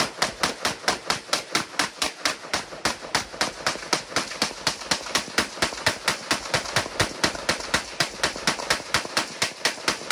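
AR-15 rifle in .223 firing rapid, evenly spaced shots, about four a second, without a break: a mag dump emptying a 50-round magazine.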